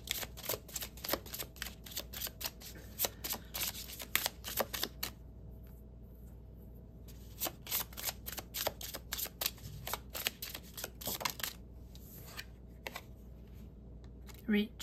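An oracle card deck being shuffled by hand: quick runs of crisp card clicks for about five seconds, a pause of about two seconds, then more shuffling that thins out toward the end.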